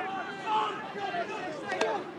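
Indistinct voices of players and spectators calling out at a rugby match, with no commentary over them.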